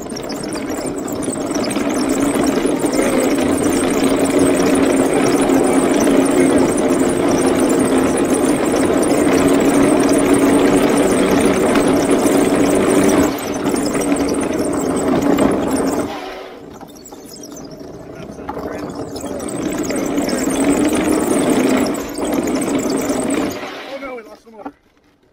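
Homebuilt wooden tank driving on pavement: its two NPC Black Max electric motors drone under power while the wooden-slat tracks roll over the road. The sound eases off about two-thirds of the way through, builds again and stops at the end.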